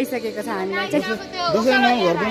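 A woman's voice, continuous, its pitch rising and falling, over a faint steady tone.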